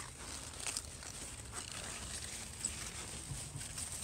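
Quiet outdoor background with a few faint, short rustles and soft steps as plants are brushed past.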